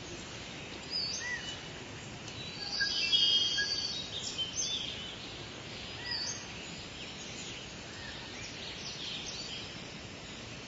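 Rainforest ambience sound effect: birds chirping and calling over a steady background haze, with a louder burst of calls about three seconds in.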